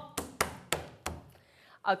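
A few light taps on a wooden tabletop, about four in the first second and fading away.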